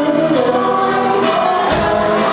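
Live band playing: singing over acoustic and electric guitars, with a sharp drum hit near the end.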